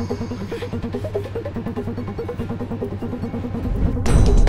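Background music: a quick, even run of short repeating pitched notes over a steady low bass, with a louder section starting right at the end.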